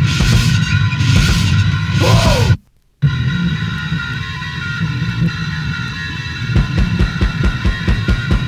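Powerviolence punk played from vinyl: fast, heavily distorted band music cuts off about two and a half seconds in for a half-second gap between tracks. The next track opens on a held, ringing distorted chord, and fast drum beats come in near the end.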